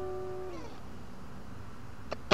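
Background music: a held electric guitar note from the song fades, then bends down in pitch and stops about half a second in, leaving only faint hiss.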